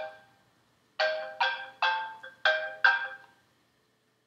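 Mobile phone ringtone: a short tune of about six struck, pitched notes, each dying away. It plays from about a second in and stops abruptly a little past three seconds.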